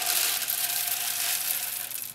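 Dark soil pouring out of a cut plastic bottle scoop into a pocket of a strawberry tower planter: a steady gritty hiss that stops just before the end.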